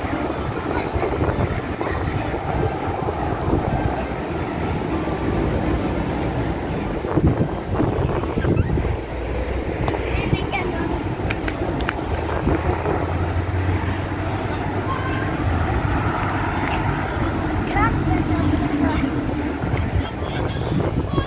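Wind rumbling on the microphone, with voices talking in the background.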